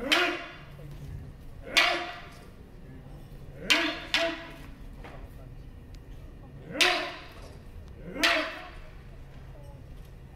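Sharp kiai shouts from martial artists in a kobudo demonstration: six short, loud shouts, each rising in pitch, with two coming close together about four seconds in.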